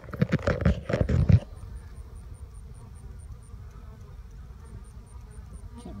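About a second and a half of loud rustling and crackling noise, then honeybees humming steadily around a hive entrance.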